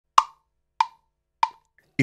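GarageBand for iOS's default metronome click, three evenly spaced clicks a little over half a second apart, the first a little louder than the other two.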